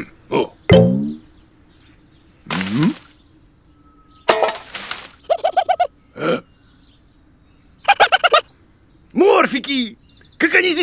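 Cartoon sound effects: a character's wordless grunts and mumbling, with a short rustling swish about four seconds in and quick rapid-fire chattering bursts around five and eight seconds.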